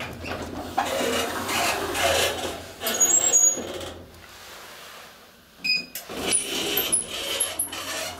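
1963 ASEA Graham traction elevator in operation: rubbing and scraping noise with high squeaks over a steady low hum. There is a quieter stretch in the middle, then a sharp clunk and more rubbing and squeaking.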